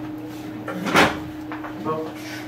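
A single short, loud knock about a second in, over a steady low hum, with low voices nearby.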